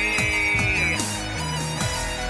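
Electronic industrial music played on synthesizers and a drum pad: a high held synth note fades out about halfway through, with swooping downward pitch bends over a steady synth bass line and a regular drum-machine beat.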